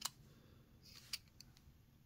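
A few small sharp clicks of a 1/64 die-cast model car's base and body being handled and pressed together in the fingers, the loudest right at the start and another just over a second in.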